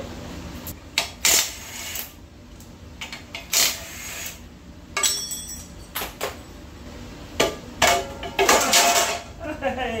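Sharp metallic clinks and clanks from a steel automatic-transmission flexplate and its bolts being worked off a Ford 390 FE V8's crankshaft and set down on a concrete floor. The knocks come singly, several seconds apart, then bunch together near the end.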